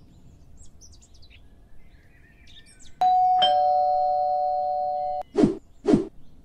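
A two-tone doorbell rings a ding-dong about halfway through, its lower second tone held for nearly two seconds before cutting off abruptly. Faint bird chirps come before it, and two thumps follow near the end.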